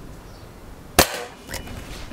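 A single shot from an Anschütz Hakim spring-piston military training air rifle: one sharp crack about a second in with a brief ringing tail, followed about half a second later by a fainter knock.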